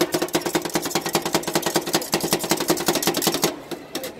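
Metal spatulas chopping ice cream mix against a steel cold-plate pan: a rapid, even clatter of strikes that stops about three and a half seconds in, followed by a few separate taps.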